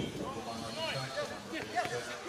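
Football players shouting short calls to each other during play, several voices overlapping, words unclear.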